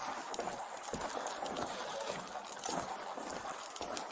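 Footsteps and the rustle of clothing and gear, picked up by the chest-worn microphone of a walking officer's Axon Body 3 body camera, as a string of faint irregular taps over a steady hiss.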